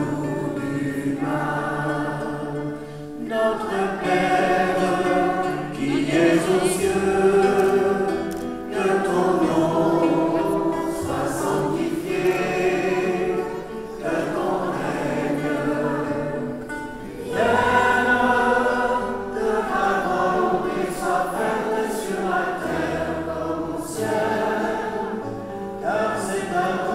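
A church congregation of clergy and children singing a hymn together, with hand gestures, in phrases of a few seconds with short breaks between them.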